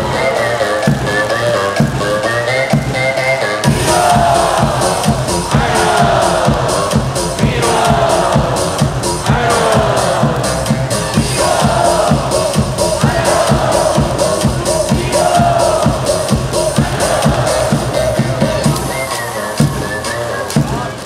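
Upbeat baseball cheer song played loud over a stadium sound system with a steady quick beat, and a large crowd of fans singing and chanting along in repeated falling phrases.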